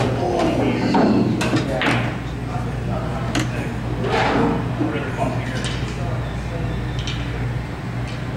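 Room noise of a pool hall: people talking out of range of the microphone, background music, and a few sharp clicks, over a steady low hum.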